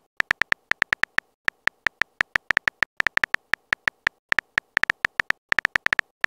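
Phone keyboard key-click sounds from a texting app, one short click per letter as a message is typed, in a rapid, uneven run of several clicks a second.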